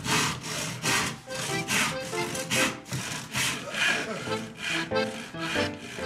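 Handsaw cutting through a wooden plank in steady back-and-forth strokes, about two to three rasping strokes a second.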